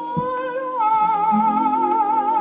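A 1947 shellac 78 rpm record playing on an acoustic gramophone: a woman sings a long, held note with wide vibrato that steps down a little under a second in, over the record's accompaniment. Faint surface clicks recur at a regular interval.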